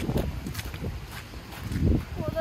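Footsteps in fresh snow, a series of soft steps, over a low rumble on the microphone that swells near the end.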